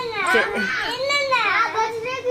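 Children's high-pitched voices calling out in play, their pitch sliding up and down in quick arches.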